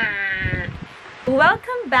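A man's high, wavering, bleat-like laugh lasting about half a second, followed by speech.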